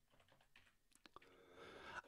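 Faint typing on a computer keyboard: a few soft keystroke clicks around the middle, otherwise near silence.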